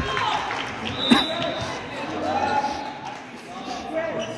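Voices of players and spectators echoing around a school gymnasium, with one sharp volleyball impact about a second in.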